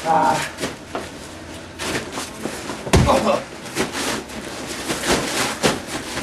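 Wrestlers' bodies hitting a backyard ring mat: a heavy thud about three seconds in as a wrestler is suplexed into the mat, among lighter knocks and scuffs.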